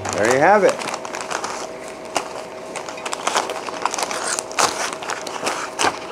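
Foil mylar bags crinkling and crackling in irregular bursts as they are handled and shuffled together.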